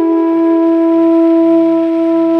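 Bansuri (bamboo flute) holding one long steady note in a melodic dhun, over a faint low drone.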